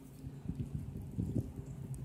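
Wind buffeting the microphone in uneven low gusts, over a steady low hum.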